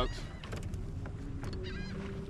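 A bird gives a few quick pitched calls late on, over a faint steady hum.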